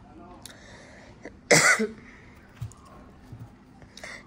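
A single short, sharp cough about one and a half seconds in, with faint taps of playing cards being handled before and after it.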